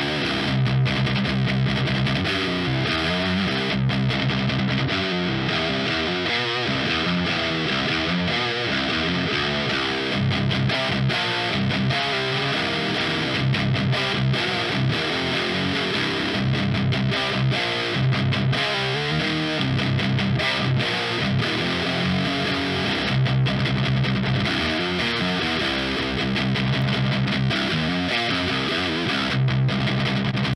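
Improvised riffing on a heavily distorted electric guitar, played back from a take recorded with a Comica STM01 large-diaphragm condenser microphone in front of a guitar amp. The tone is chunky, with the treble pulled down and little high end, and the low chugging riffs are broken by short pauses.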